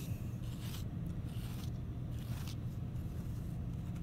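Metal rib scraping across a damp clay slab in a series of short strokes, raking and smoothing the surface.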